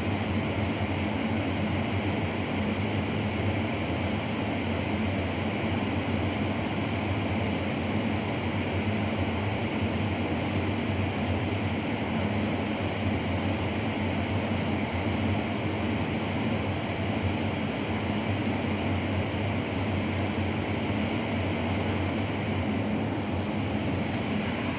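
A steady, unchanging low rumble with a hiss over it and a low hum running through it.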